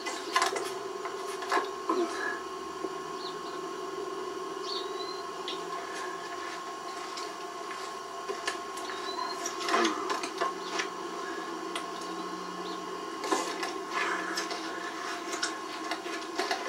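A steady hum with a faint high tone running through it, broken by a few scattered knocks and clicks, the clearest about ten seconds in and again near the end.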